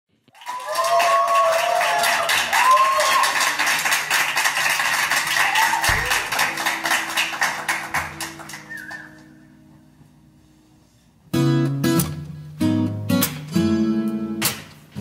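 A dense crackly wash of sound with gliding tones fades away over the first nine seconds. Then, about eleven seconds in, an acoustic guitar starts strumming chords.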